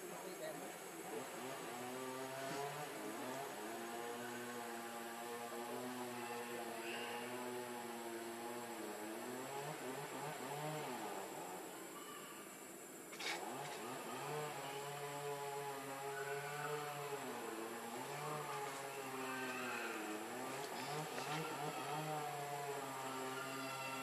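A slow tune of long, wavering held notes over a low steady tone, pausing near the middle, with a sharp click as it resumes.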